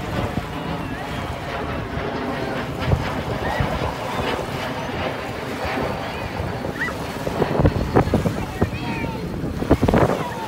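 Small waves washing and breaking onto a pebbly shore, with wind buffeting the microphone; several sharp louder bursts near the end.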